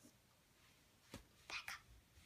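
Near silence: room tone, with a few faint, short clicks and breathy sounds in the second half.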